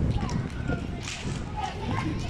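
Distant children's voices calling across an outdoor pitch over a heavy, uneven rumble of wind on the microphone, with one sharp, whip-like sound about a second in.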